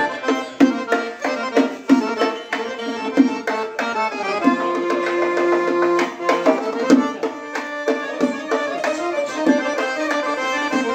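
Live Uzbek folk music on doira frame drums and accordion, with a small string instrument: the drums strike a steady beat about twice a second under the accordion's melody, which holds a long chord about halfway through.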